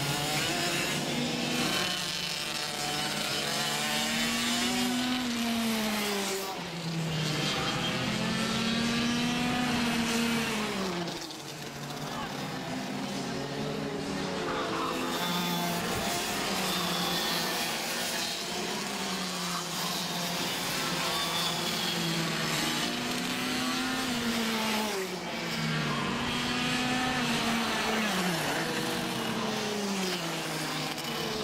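Racing go-kart engines revving hard, several karts at once: each note climbs for a second or two as a kart accelerates, then drops as it lifts off for a corner, again and again.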